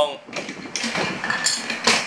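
Plastic Lego bricks clacking and rattling as a hand-held brick-built rocket is rammed into a small Lego car, with a sharp knock of plastic on plastic near the end.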